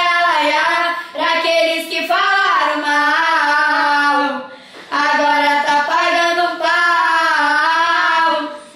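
Two young girls singing a Brazilian funk chorus together without accompaniment, drawing out long notes, with short breaks about a second in and about halfway through.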